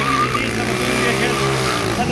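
Sport quad (ATV) engine held at steady high revs during a wheelie, its pitch easing down slightly near the end.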